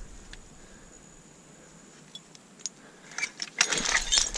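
A hand rake or digging tool working through dump soil full of rocks and broken glass: a couple of faint clinks, then from about three seconds in a run of scraping and clinking as it drags debris.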